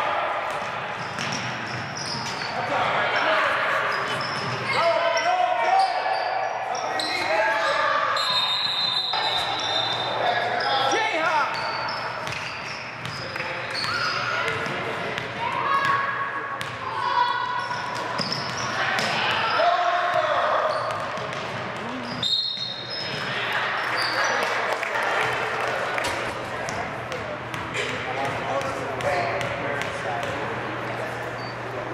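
A basketball being dribbled and bouncing on a hardwood gym floor, with repeated short thuds, over players' and spectators' voices calling out, in a large echoing gym.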